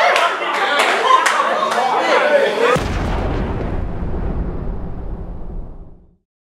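Crowd voices shouting and reacting, with sharp claps or knocks. About three seconds in, a deep, low rumbling boom cuts in, and everything fades out to silence by the end.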